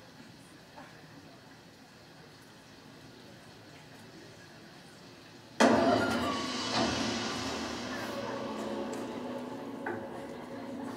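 Horror film trailer soundtrack played over hall speakers: quiet at first, then about five and a half seconds in a sudden loud sting that rings on and slowly fades.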